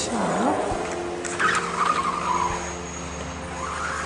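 Sliding patio door being pushed open along its track: a short squeak that dips and rises in pitch as it starts, then scraping that fades after a couple of seconds.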